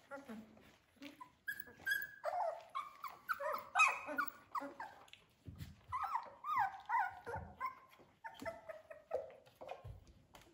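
Three-week-old Australian Labradoodle puppies whining and yipping together, many short high cries overlapping and dropping in pitch, busiest around the middle.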